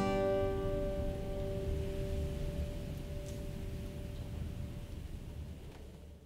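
Acoustic guitar's final strummed chord ringing out and slowly dying away, with no further playing.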